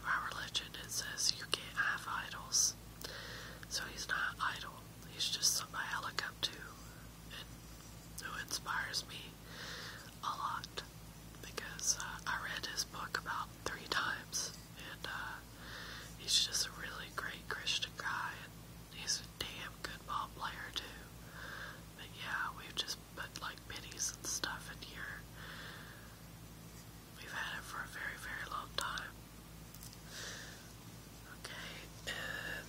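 Soft whispered speech running on with short pauses, over a faint steady low hum.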